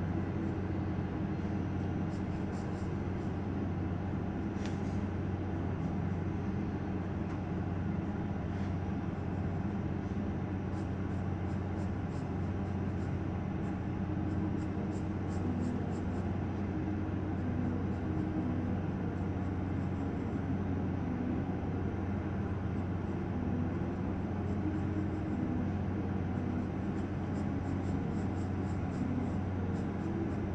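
A steady low droning hum runs throughout, with faint scratches of a graphite pencil on sketchbook paper now and then.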